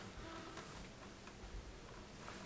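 Faint ticks against quiet room tone.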